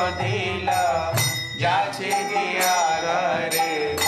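Devotional chant-like singing with percussion: sharp metallic strikes that ring on high, about once a second, together with low drum thumps.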